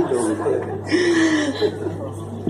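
Light chuckling laughter mixed with a voice, picked up through a handheld microphone.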